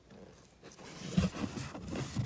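Handling noise: soft rustling of clothing and gear with a few light bumps as the camera and welding helmet are moved about, starting about half a second in.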